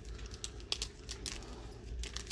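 Light, irregular crinkles and clicks of a Panini Chronicles trading-card pack wrapper being handled in gloved hands.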